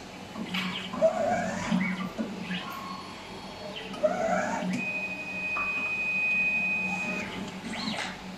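Automatic wire stripping machine working on a thick shielded cable: a sharp click about a second in and another about four seconds in, each followed by brief mechanical whirring, then a steady high motor whine for about two and a half seconds as the machine cuts and strips the outer jacket.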